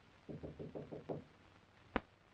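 Knocking on a wooden paneled door: a quick run of about six raps in under a second, followed near the end by a single sharp click.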